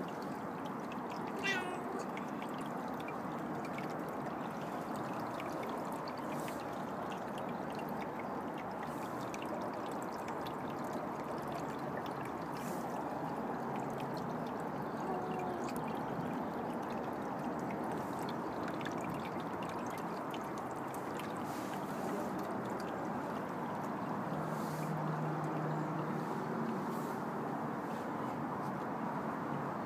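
A Birman cat gives one short meow about a second and a half in, over a steady rushing noise.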